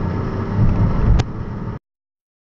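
Cabin noise of a vehicle driving slowly: a steady low engine and road rumble, with a single sharp click about a second in. The sound cuts off suddenly near the end.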